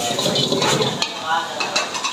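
Long-handled metal ladle scraping and knocking against a wok as vegetable Manchurian balls are stirred and fried, with a steady sizzle.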